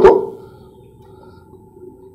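A man's voice trails off at the start, then a pause with only a faint steady hum of room tone.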